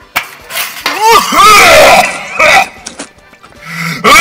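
A man retching loudly over a metal stockpot in several heaves, vomiting into it.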